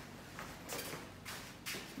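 Soft footsteps and shuffling on a rubber training mat with the swish of uniform fabric, a few faint scuffs as two people step and move into position.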